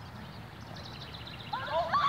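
Young people shrieking and laughing in a rapid burst of high, wavering cries that breaks out suddenly about one and a half seconds in.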